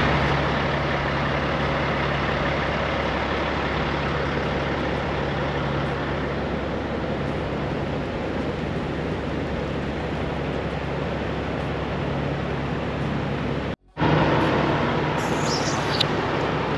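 Semi-truck idling: a steady low hum under an even rushing noise, with a moment's silence about 14 seconds in before the same sound resumes.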